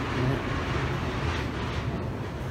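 A steady low rumble with an even hiss above it, with no distinct event.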